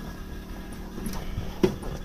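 Electric fuel pumps humming low and steady, with the engine not yet cranked. A faint click comes about a second in and a sharper click about a second and a half in.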